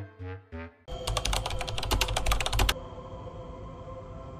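Horror-film sound design: a few short falling musical notes, then about two seconds of rapid clicking, about ten clicks a second, then a low eerie drone of ambient music.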